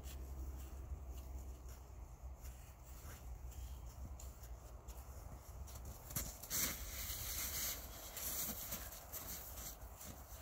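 Snow crunching underfoot and being patted and packed by hand, louder for a second or two past the middle, over a low rumble.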